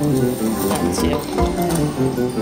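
Huff N' More Puff video slot machine playing its free-games bonus music, an electronic tune of pitched notes changing quickly, with light chiming.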